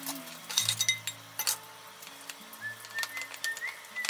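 Ceramic rice bowls clinking as fried rice is dished up with a wooden spatula: a quick cluster of clinks about half a second in and another about a second and a half in. Soft background music plays throughout.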